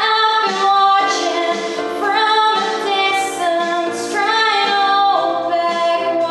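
A woman singing a pop ballad into a handheld microphone over a recorded backing track, coming in strongly right at the start and holding long notes.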